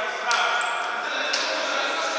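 Futsal ball being kicked on a wooden sports-hall floor, two sharp knocks about a second apart, under players' voices calling out in the hall.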